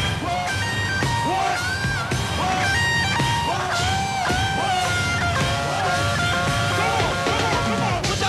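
Live band music. A melodic lead line of held, bending notes runs over a steady bass backing.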